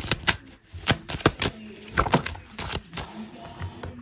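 A deck of tarot and oracle cards being shuffled and handled: a string of quick, irregular papery clicks and snaps as cards are riffled, drawn and laid down on the table.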